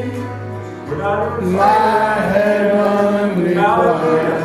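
Gospel worship singing with instrumental accompaniment: a man's voice sings long, held notes that bend in pitch, over a steady low tone that drops out about two seconds in.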